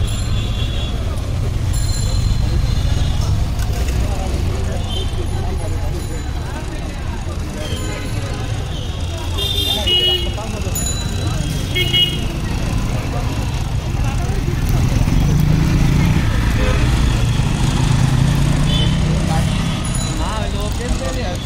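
Busy roadside street noise: a steady rumble of traffic with a few short horn toots, and voices in the background.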